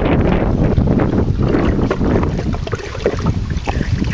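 A homemade plastic-tub toilet flushing: hose-fed water rushing and draining out through the bottom hole, carrying a whole paper towel down, easing off near the end. Wind rumbles on the microphone.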